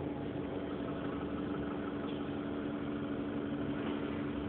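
Interior sound of an Alexander Dennis Enviro400 hybrid double-decker bus running: a steady hum with a constant drone over even background noise.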